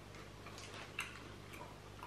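A few faint, sparse clicks from chewing crunchy chocolate-coated biscuit balls, the clearest about a second in, over a steady low hum.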